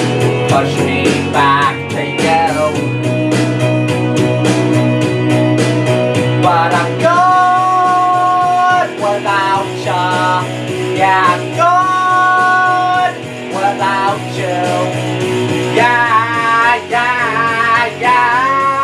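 Karaoke singing: a man's voice singing the melody over a rock backing track with guitar, holding several long notes along the way.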